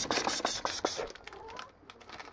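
Rummaging in a kitchen cupboard: items knocking and a plastic-wrapped packet crinkling as it is pulled off the shelf, in a quick run of small clicks and rustles that dies away after about a second and a half.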